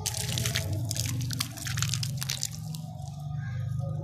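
Wet sand-and-cement slurry poured onto cement balls, splattering with dense crackling for about two and a half seconds, then thinning to a few scattered drips.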